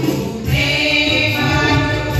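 Live music: women singing into handheld microphones over electronic keyboard backing, with a singing voice coming in about half a second in.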